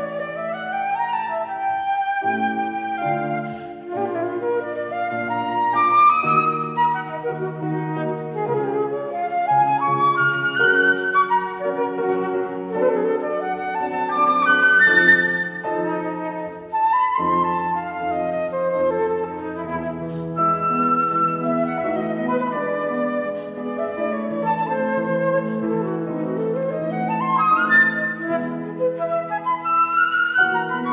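Silver concert flute playing fast, florid runs with quick upward sweeping scales, over a piano accompaniment.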